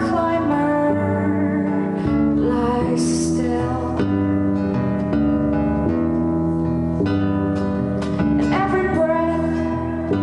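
A woman singing a slow folk song, accompanying herself on acoustic guitar. Her voice comes in phrases over the sustained guitar chords.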